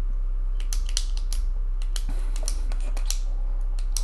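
Typing on a computer keyboard: irregular quick key clicks over a steady low hum.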